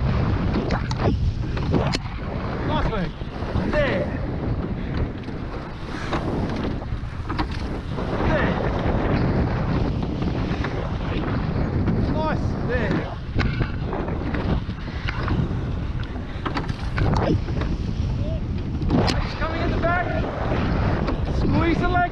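Wind buffeting the microphone over the rush of water along a rowed surf boat's hull, with the oars working through the water.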